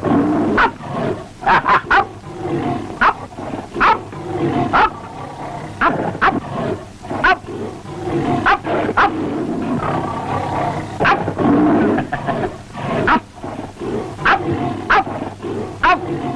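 A tiger snarling and roaring again and again, with repeated sharp cracks between the snarls.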